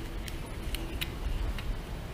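A few faint plastic clicks as the folding arms of a VK330 micro drone are swung out and snapped into their locked positions, over a low background rumble.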